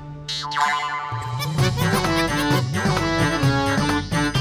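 Playful background music score. A quick downward-sliding sound effect comes just after the start, then a bouncy tune with a steady low beat picks up about a second in.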